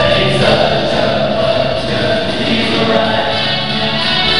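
A song with singing, played loud as dance music.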